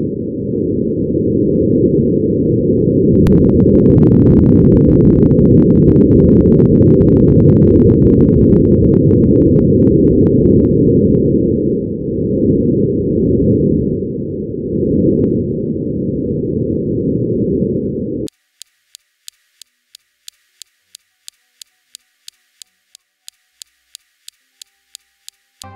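Martian wind picked up by the SuperCam microphone on NASA's Perseverance rover: a loud, low, muffled rush that rises and falls in gusts, with scattered faint clicks in the middle. It cuts off suddenly about 18 seconds in. After that come regular high ticks, about three a second.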